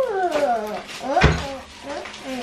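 A pet's whining cries, several drawn-out calls that slide down in pitch one after another, with a sharp knock about a second in.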